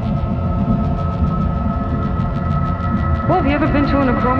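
Dark, heavy deathstep-style electronic music: a thick distorted bass under sustained droning synth tones, with a fast, even hi-hat tick about five times a second. About three seconds in, a sampled voice with bending pitch comes in over it.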